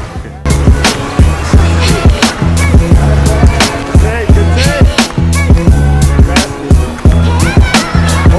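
Background music with a heavy beat drops in about half a second in: deep sustained bass notes under sharp drum hits, repeating steadily.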